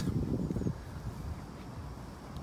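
Low, even rumble of wind on the microphone, a little stronger in the first moment, then settling.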